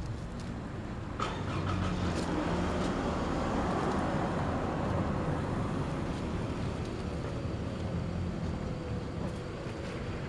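Road traffic: a vehicle going past, swelling from about a second in and slowly fading over the following seconds, with a single click near the start.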